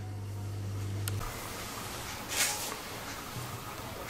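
Quiet kitchen room tone with a low electrical hum that cuts off at a click about a second in, followed by one brief soft hiss of handling noise.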